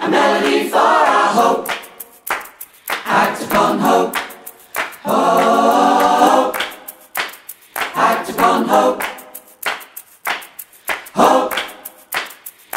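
An unaccompanied choir singing in short phrases, with a long held chord about five seconds in.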